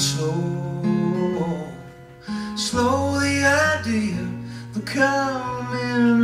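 Acoustic guitar playing with a man singing wordless, drawn-out notes over it. The music thins out briefly about two seconds in, then comes back fuller.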